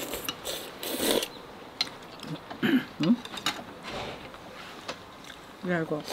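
Rice noodles being slurped from bowls of noodle soup, in several short noisy slurps, the loudest about a second in, with a couple of brief murmured voice sounds between them.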